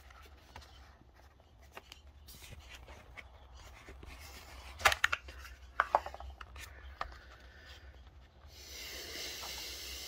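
A small translucent plastic tool case handled and opened: scattered light clicks and knocks of plastic about halfway through, then a steady scraping rub near the end as the plastic lid slides off the base holding a small screwdriver set.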